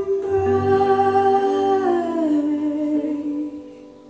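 A recorded female vocal holds a long note that steps down to a lower note about two seconds in, over soft accompaniment, fading near the end as the song closes. It is played back through hi-fi loudspeakers and picked up in the room.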